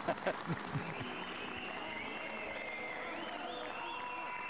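Arena audience applauding, settling into steady clapping about a second in.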